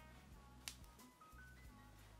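Faint background music: a low bass line under short high melodic notes, with a light, evenly repeating snap-like beat; one click a little after half a second in stands out above the rest.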